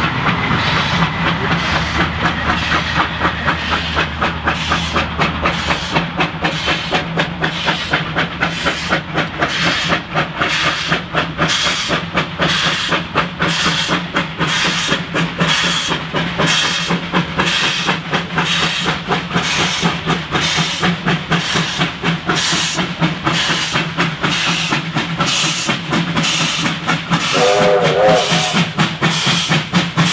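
Two Victorian Railways R class 4-6-4 steam locomotives working double-headed, approaching with a regular, rapid beat of exhaust chuffs and hiss. A short whistle blast sounds near the end.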